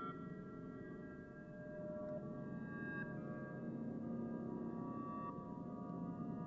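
Cinematic drone sound effect from a sample library, playing unreversed as it was bought: a steady, layered bed of many held tones over a low hum.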